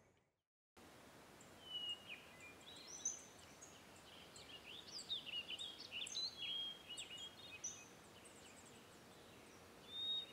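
Several songbirds chirping and whistling, many short overlapping calls and quick pitch glides, over a faint steady hiss; it starts after a moment of dead silence.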